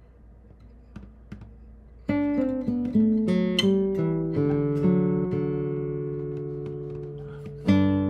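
Old Yamaha nylon-string guitar. After about two seconds of quiet with a few faint string clicks, a chord is struck and its notes picked out, then left to ring and fade, and a fresh chord is struck near the end. A finger squeak on the strings spoils the take.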